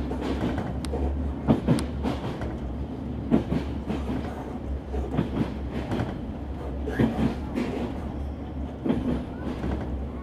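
Train running along the rails, heard from on board: a steady low rumble with irregular wheel clacks and knocks.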